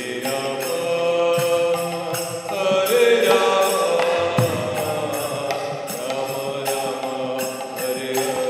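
Devotional kirtan chanting: a lead voice holds a long, wavering melodic line over steadily ringing karatal hand cymbals, with occasional deep strokes of a mridanga drum.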